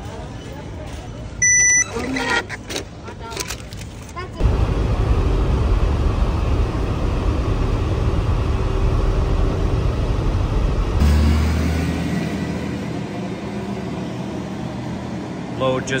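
A card-payment terminal beeps once, about a second and a half in. From about four seconds in, the inside of a box truck cab on the highway: a loud, steady low rumble of engine and road noise, which cuts off about eleven seconds in. A quieter steady low hum of a large warehouse's air handling follows.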